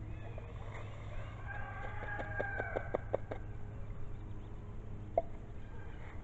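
A rooster crowing faintly, one drawn-out crow starting about a second and a half in and lasting under two seconds, over a steady low hum. A single short click comes near the end.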